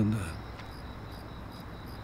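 Crickets chirping steadily, short high chirps repeating at an even pace, with the tail of a man's low voice fading out at the very start.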